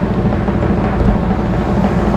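A sustained drum roll, a dense rapid rumble of low drum strokes, announcing a reveal.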